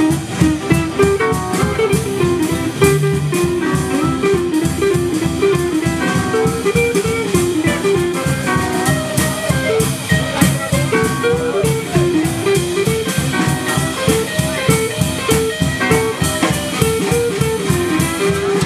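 Live band playing a fast instrumental rag: electric archtop guitar picking a quick melody over a steady drum-kit beat, upright bass and rhythm guitar.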